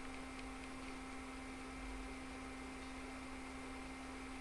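Quiet room tone: a steady low hum with a faint hiss underneath.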